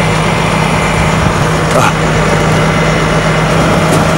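Tow truck's engine running at a steady drone while its winch cables pull a tipped-over utility trailer back up onto its wheels.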